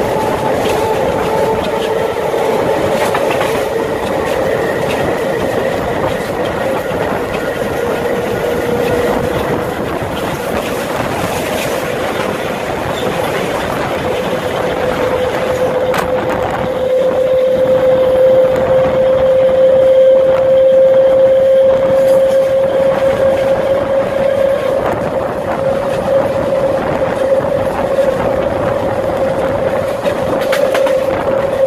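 SuperVia Série 400 electric multiple-unit train running along the line, with the rumble of wheels on rail and a steady whine that climbs slowly in pitch as it gathers speed. The whine is loudest about two-thirds of the way through.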